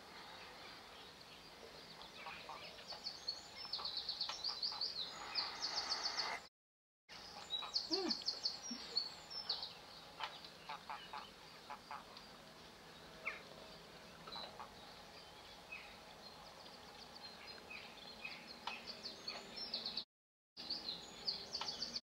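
Small birds calling in the background, in runs of rapid, high-pitched repeated chirps and trills over a faint steady outdoor hiss. The sound cuts out abruptly twice for under a second.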